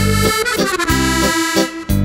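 Piano accordion playing a lively tune, a sustained right-hand melody over low bass notes that come back on a regular beat.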